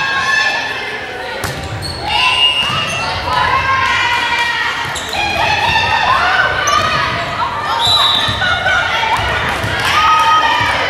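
Indoor volleyball rally in a gym: players' and spectators' voices calling and shouting over the play, with the ball being served and struck, all echoing in the large hall.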